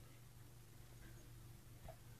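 Near silence: a low steady hum, with one faint click near the end.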